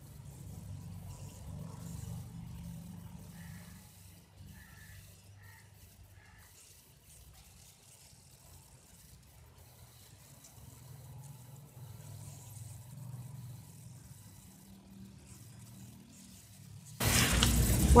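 A low, steady background hum with little else, and a few faint short tones about four to five seconds in. Near the end a loud voice cuts in suddenly.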